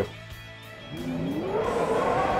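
Quiet background music, then, from about a second in, a rising swell that climbs in pitch and levels off: a transition sound effect.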